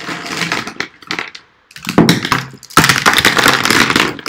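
A handful of plastic ballpoint pens rattling and clattering together as they are rummaged close to the microphone, in loud bursts, the longest over the last two seconds.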